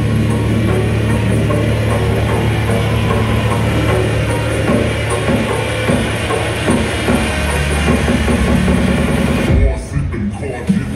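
Loud electronic dance music from a DJ set played over an arena sound system, with a heavy sustained bass line and beat. The music briefly drops out near the end.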